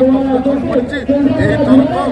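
A man speaking, with other voices chattering in the background.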